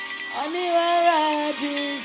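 A woman singing solo, holding long notes that slide from one pitch to the next, with a short break between phrases about one and a half seconds in.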